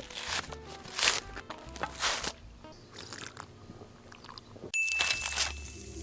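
Crunching and tearing of a coconut's husk as it is bitten and pulled apart, in three bursts over the first half, under background music. Near the end a single high ding sounds and holds for about a second.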